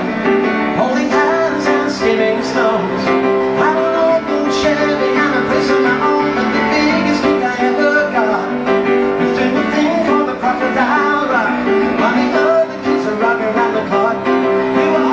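Grand piano played live, a continuous run of chords with a melody line over them.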